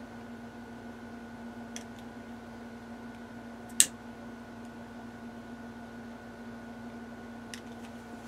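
Disposable lighter being handled and struck while flaming bubbles out of wet epoxy resin: a sharp click about four seconds in, with fainter clicks near two seconds and near the end, over a steady low hum.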